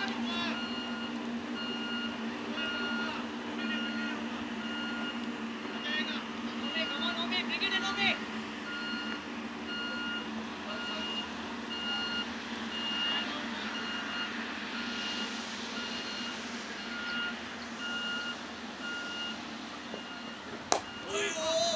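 A vehicle's reversing alarm beeping at an even pace over a steady low hum, with voices briefly in the background a few seconds in.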